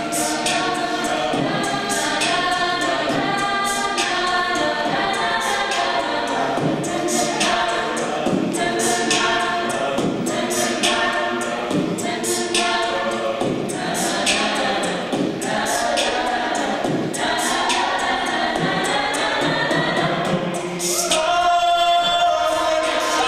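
Mixed a cappella group singing in close harmony over a steady beat of vocal percussion, swelling into a louder held chord near the end.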